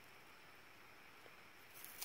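Near silence: only a faint, steady outdoor background hiss.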